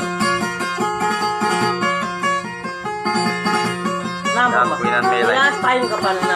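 Plucked string instrument playing a quick, repeated melodic figure over a steady low drone note; about four seconds in, a wavering voice joins above it.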